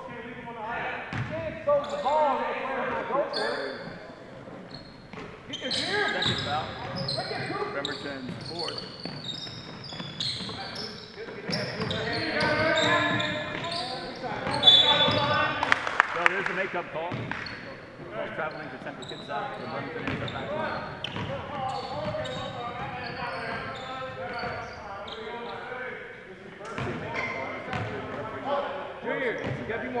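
A basketball dribbling on a hardwood gym floor during play, with players' and coaches' voices echoing around the hall. There are a few sharp knocks about halfway through.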